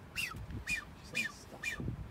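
Male blue-footed booby whistling during his courtship display: four short calls, about two a second, each a thin whistle that rises and then falls.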